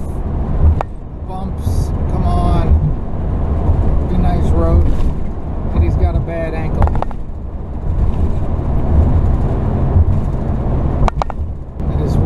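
Steady low road and engine rumble inside a vehicle cruising at highway speed, with snatches of a voice now and then.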